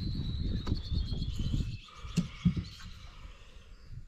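A bird singing a long run of rapid high whistled notes that slide slowly down in pitch, over a low rumble. Two short knocks come a little past halfway.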